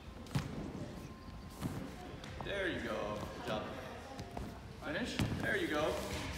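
A few dull thuds of feet landing on padded gymnastics mats during back walkovers, with voices talking between them.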